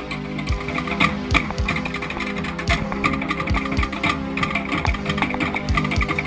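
Polynesian drum ensemble playing a fast rhythm: rapid strokes on wooden slit log drums over deeper hits on skin-headed barrel drums, with steady pitched tones underneath.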